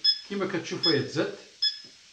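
Tornado V9 UHD satellite receiver's signal beep: short high beeps repeating about every 0.8 seconds, three times, which show that the receiver is picking up a satellite signal on the tuned transponder.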